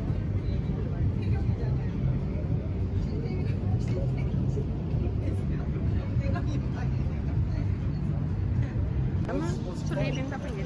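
Wind rumbling on the phone's microphone, with people talking in the background; one voice stands out about nine seconds in.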